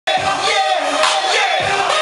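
Dance music playing loudly while a crowd of dancers sings and shouts along.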